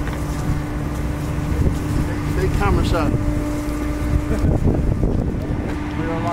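Wind rumbling on the microphone of a handheld camera, with indistinct voices about halfway through and a steady low hum.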